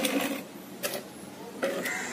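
Plastic clatter from handling a hand-pump garden sprayer bottle at its neck and pump head, in three short bursts: at the start, just under a second in, and about a second and a half in.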